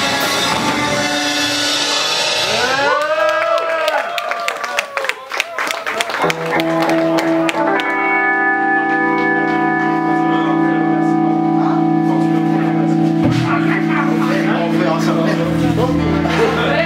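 Live rock band with electric guitar, bass and drums playing loud. About three seconds in the guitar breaks into arching, swooping pitch bends, and from about six seconds on it settles into sustained droning tones.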